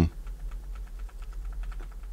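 Light, quick clicking of computer keys, several clicks a second.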